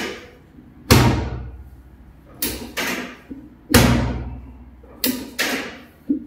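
Chiropractic drop table dropping under thrusts on the mid back: two loud clacking thuds, about a second in and again near four seconds, each leaving a low rumble that fades, with lighter clicks and knocks between.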